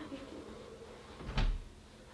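A bedroom door being opened, with one short, heavy thud about one and a half seconds in.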